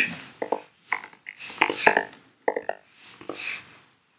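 A man's indistinct muttering and mouth sounds in short bursts, with a few sharp clicks as a word is typed on a laptop keyboard.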